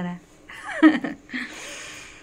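Human vocal sounds: a held sung note ends at the start, a short voiced sound falling in pitch comes about a second in, then a breathy exhale.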